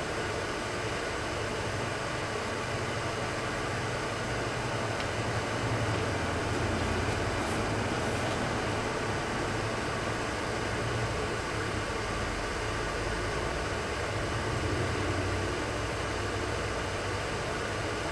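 Steady low hum under an even hiss, with no distinct events: background machinery or ventilation noise.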